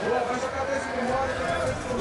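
Mostly speech: a commentator's voice talking, with no distinct non-speech sound standing out.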